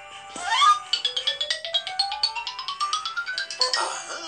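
Cartoon music sound effect from an animated story app: a quick upward swoop, then a steadily rising tone over a fast run of plinking notes lasting about two and a half seconds, as the city wall goes up in the picture.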